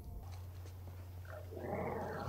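A faint animal-like growl from a creature hidden in a trash can in the episode's soundtrack. It swells and fades over about a second near the end, over a steady low hum.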